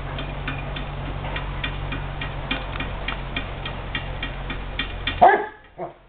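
Basset hound barking loudly twice near the end, the second bark shorter. Before that there is a steady low rumble with faint, quick, regular ticking.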